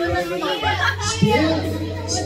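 Several people's voices in a lively room over background music, with a steady low bass note that comes in about half a second in.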